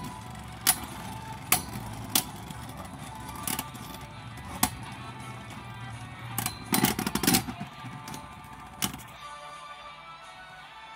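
Two Beyblade X spinning tops whirring in a plastic stadium, with sharp clacks as they collide every second or so and a quick cluster of hits about seven seconds in. The whirring drops away about nine seconds in.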